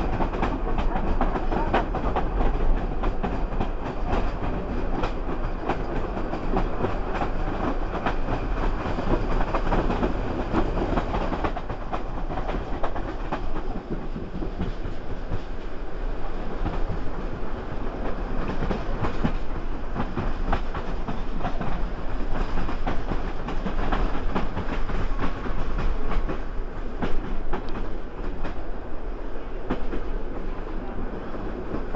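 Rolling noise of a moving TLK passenger coach heard from inside, at a window, with a steady run of wheel clicks over rail joints and points.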